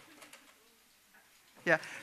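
A mostly quiet pause in a lecture hall with a faint low voice early on, then a single short spoken "yeah" near the end.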